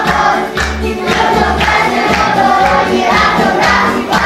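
A group of young children singing a New Year song together in unison, over a backing track with a steady bass beat.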